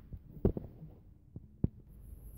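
A few brief, dull thumps inside a car cabin: one about half a second in, a faint one after it, and the loudest about a second and a half in, over quiet background.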